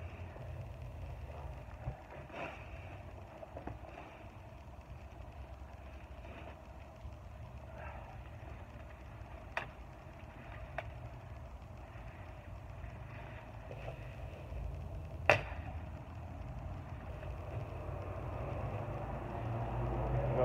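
A few scattered sharp chops as the blade of a Gerber Gator kukri machete strikes shrub branches, the loudest about fifteen seconds in, over a steady low rumble.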